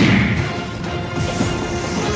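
TV programme title music for an animated show bumper: a loud impact hit with a falling sweep at the start, then the theme music carrying on with steady held tones.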